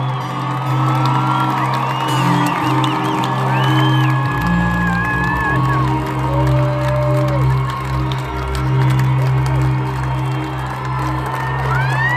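Live rock band playing a long held chord over a sustained bass note, with a deeper bass coming in about four seconds in. The concert crowd cheers and whoops over it.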